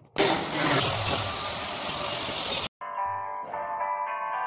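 Electric arc welding: a steady, loud crackle of the arc for about two and a half seconds that cuts off abruptly. Background music follows.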